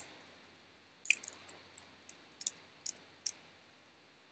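Computer mouse clicking: a run of small sharp clicks starting about a second in, the first the loudest, then spaced out irregularly.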